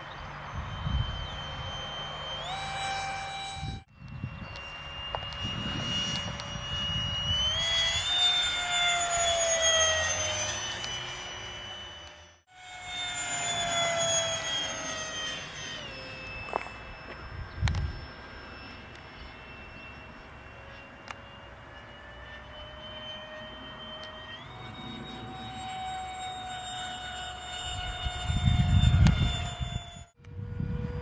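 Electric ducted-fan model jet flying overhead with a high whine of several tones, rising in pitch and then falling away as it passes. The sound breaks off abruptly twice. A burst of low rumble comes near the end.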